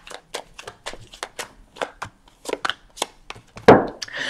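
Tarot cards being shuffled by hand, a run of light, irregular clicks. Near the end, cards and the deck are set down on a wooden table with a louder knock.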